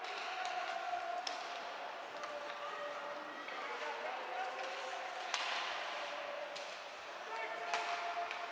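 Ice hockey game in an arena: sharp knocks of sticks on the puck and the puck against the boards, the loudest about five seconds in, over the hiss of skates and ice and voices calling.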